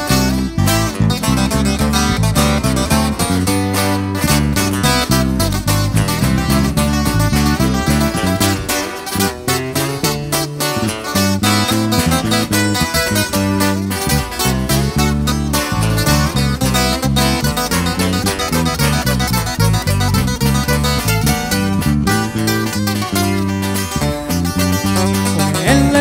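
Live corrido trio playing an instrumental introduction: an acoustic lead guitar picking the melody over a strummed twelve-string acoustic guitar and a steady bass line.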